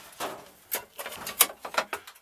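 Several short, light clicks and knocks, the sharpest about a second and a half in, from handling around a metal electrical enclosure.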